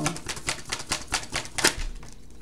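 Tarot cards being shuffled by hand: a fast run of crisp card clicks, about eight a second, loudest near the end.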